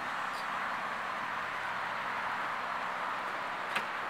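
Steady outdoor background noise, an even hiss with no distinct source, with a faint click early on and a sharper click just before the end.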